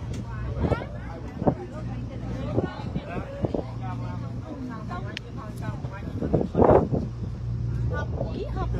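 A tour boat's engine running with a steady low hum beneath people chatting on deck, with one voice louder near the end.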